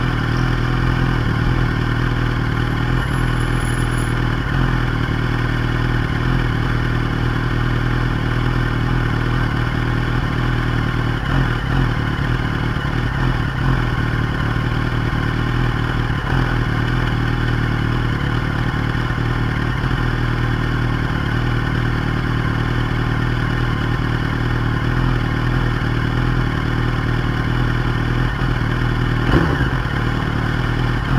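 Yamaha YZF-R1's inline-four engine idling steadily, with no revving.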